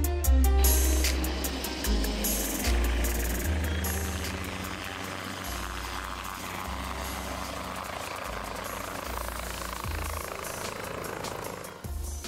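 Electronic backing music with a heavy stepped bass line and ticking percussion, mixed with the sound of a Konner light turbine helicopter in flight, its turbine and rotor heard under the music once the music eases back.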